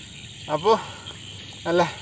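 Crickets calling in a steady, high-pitched drone, under two short spoken phrases from a man.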